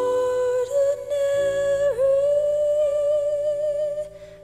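Song accompaniment with a high wordless vocal holding one long note with a slight vibrato over soft sustained chords. The pitch steps up a little early on and dips briefly about halfway through.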